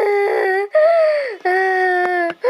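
A young person's high voice making wordless, held vocal sounds: a string of sustained notes, each under a second long, with short breaks between them.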